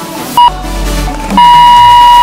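Workout interval timer beeping the end of an exercise set over electronic dance music: one short beep, then a long beep about a second and a half in.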